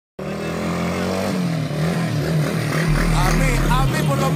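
Motorcycle engine running steadily, its low note wavering slightly; a voice comes in about three seconds in.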